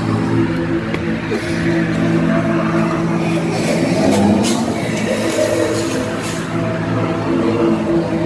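A loud, steady droning hum of several held tones, with a few short hisses in the middle.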